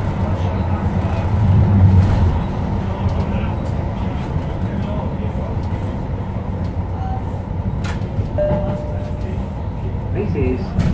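Interior of Tyne and Wear Metrocar 4016 running along the track: a steady low rumble that swells about two seconds in, then eases. Near the end there are a few sharp clicks and a brief high note.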